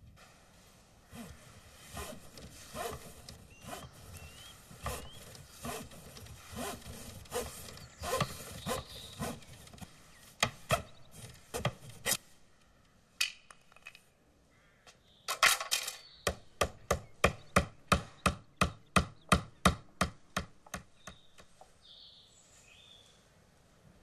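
A series of sharp knocks: irregular knocks and scrapes at first, then a quick, even run of about fifteen strikes, some three a second, that stops suddenly.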